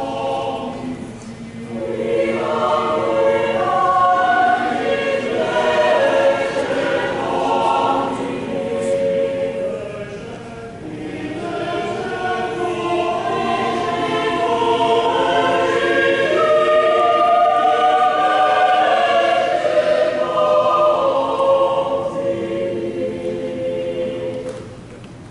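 Many voices singing a hymn together, a choir with the congregation, the phrases held long. Short breaths between lines come about a second in and again around ten seconds in.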